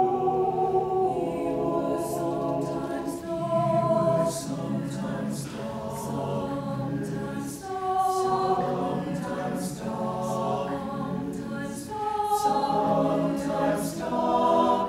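Mixed choir of women and men singing together in sustained chords. The phrases are broken by brief pauses about every four seconds.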